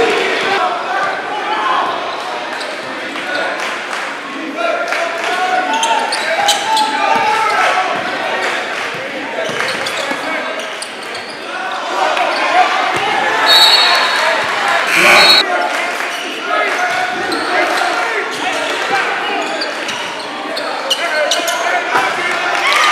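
Live game sound in a basketball gym: a basketball bouncing on the hardwood and scattered sharp knocks among voices echoing around the hall, with a brief high squeak a little past halfway.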